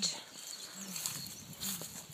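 A woman's soft, short hums at her own speaking pitch, about one a second, with faint outdoor background.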